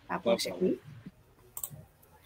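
A short spoken utterance, then a few faint sharp clicks about a second and a half in.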